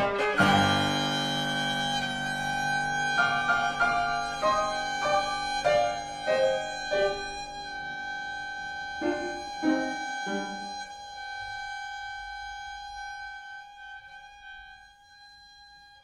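Violin and grand piano playing together. A loud chord opens, then a run of separate piano notes sounds under one long held violin note, which fades away toward the end.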